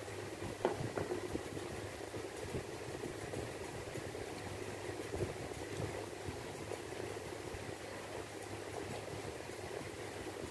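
A steady low hum, with a few faint clicks about a second in.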